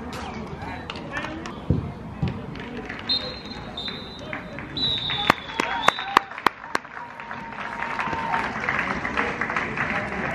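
Referee's whistle blown in three short blasts in quick succession, followed by a handful of sharp hand claps, with spectator noise rising near the end.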